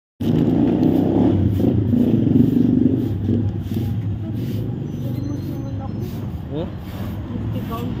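Street traffic: a motor vehicle engine rumbling close by, loudest in the first three seconds, then easing into a steadier roadside hum.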